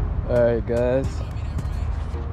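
A man's voice speaking a couple of short words over a steady low background rumble.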